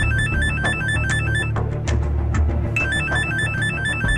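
A mobile phone ringing with an electronic beeping ringtone melody, which plays its phrase twice: once at the start and again from about three seconds in. Background music with a low bass line and drum beats runs underneath.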